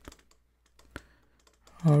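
A few faint clicks and taps of a stylus writing on a tablet, with a sharp click at the start and another about a second in.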